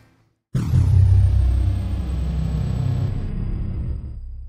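Cinematic logo sting: a sudden deep boom about half a second in, followed by a long rumbling tail that slowly fades, with a faint high falling tone.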